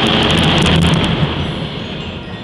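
Concert band playing a loud, percussion-heavy passage: a dense low rumble of drums and low brass with crashing cymbals, swelling to a peak about a second in and then easing off.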